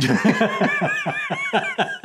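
A man and a woman laughing hard together, a quick, even run of ha-ha pulses at about seven a second.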